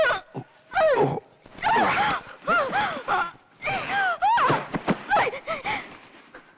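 A woman crying out in distress, a string of short, high-pitched cries, each rising and falling in pitch, as she struggles against being held.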